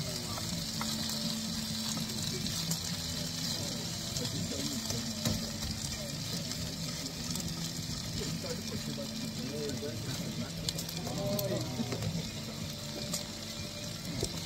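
Chicken schnitzel frying in a pan on a camp stove, a steady sizzle with the odd light click of tongs in the pan.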